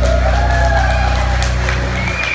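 A song's backing music holding its final low chord, with an audience starting to cheer and clap as it ends.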